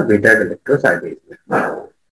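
A man's voice in short, broken-up bursts of speech, the same voice as the lecture around it.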